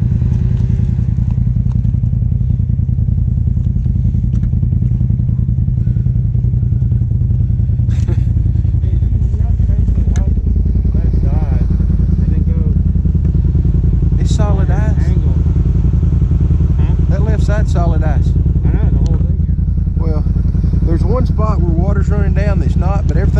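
Side-by-side UTV engine running at low speed with a steady low drone while crawling over rocky ledges, with a couple of short knocks partway through and a slight drop in the engine note about halfway.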